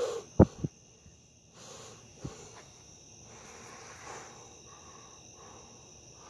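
Steady high-pitched chirring of crickets at night, with a sharp knock about half a second in and a fainter one about two seconds later.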